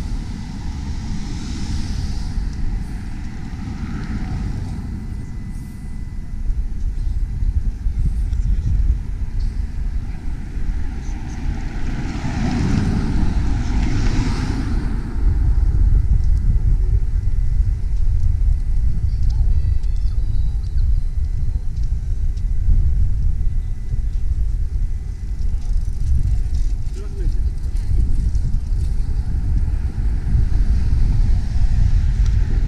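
Road traffic, cars passing along a street over a steady low rumble, with one louder pass that rises and fades about twelve to fifteen seconds in.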